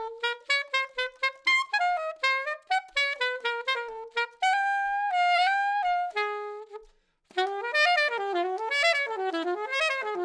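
Alto saxophone played on a 3D-printed SYOS Smoky mouthpiece, running a quick jazz line of short detached notes. About halfway through it holds one long note and then a lower one. After a brief pause for breath just before the last third, another fast run follows.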